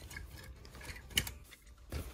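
Clothes hangers clicking and sliding on a shop rail as hanging garments are pushed aside, with faint scattered clicks and one sharper click about a second in.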